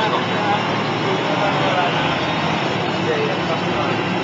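Cabin noise inside a DAF SB220 bus with Optare Delta body under way: its rear-mounted diesel engine and road noise running steadily loud, with passengers' voices faintly through it.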